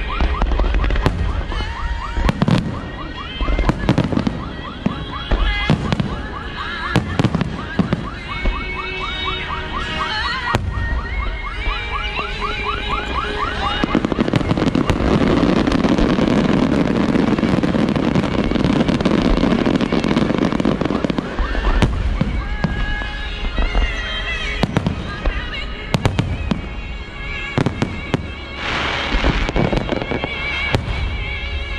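Aerial fireworks display: shells bursting overhead in repeated sharp booms. About halfway through comes a dense, continuous barrage lasting roughly seven seconds, before separate bursts resume.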